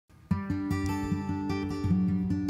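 Intro music: an acoustic guitar playing a quick run of notes, starting about a third of a second in.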